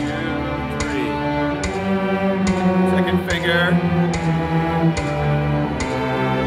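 Cello playing slow, sustained bowed notes in a hymn-like line, with a steady tick a little under a second apart keeping the beat.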